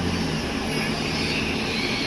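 Bus engine running and rushing cabin noise, heard from the driver's seat. A low steady engine hum drops away about half a second in, and the rushing noise goes on.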